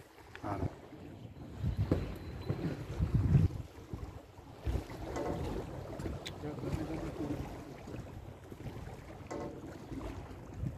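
Wind buffeting the microphone in uneven gusts, with faint voices now and then in the background.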